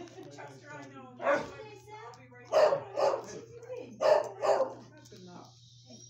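A dog barking: five short barks, the last four in two quick pairs, over a steady low hum.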